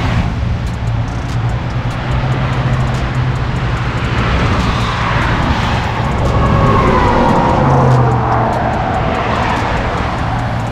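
A tow truck's engine runs steadily while a car is pulled up onto its flatbed. In the second half a louder swell of mechanical noise comes in, with a whine that falls in pitch.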